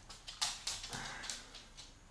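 A Siberian husky making several short, breathy noises close by, a few separate puffs in the first second and a half.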